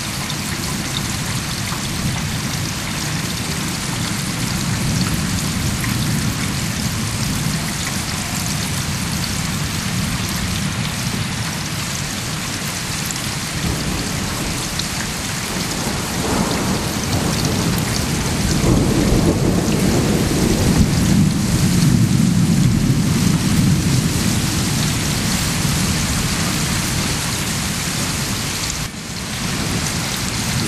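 Steady rain falling during a thunderstorm. A long, deep rumble of thunder builds from about halfway through, is loudest a few seconds later, then slowly fades.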